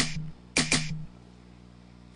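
Short drum sounds sliced from a drum loop, triggered one at a time from the pads of the Groove Agent One software drum machine. One fades out just after the start, and another sounds for about half a second, starting about half a second in.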